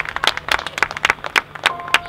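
Marching band show music: a rapid, irregular run of sharp percussive clicks and hits, with sustained tones coming in near the end.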